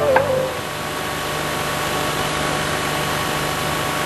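The film's background music ends on a last note in the first half second, leaving a steady hiss with a low hum underneath.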